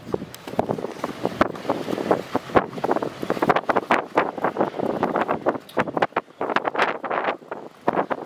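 Wind buffeting the phone's microphone in uneven gusts, a loud rumbling rush that rises and falls irregularly.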